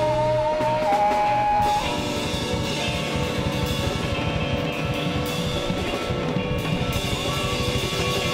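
A live band playing a drum kit and electric guitars. A long held note sounds over the first couple of seconds, then the drums and guitars carry on in a busy, steady rhythm.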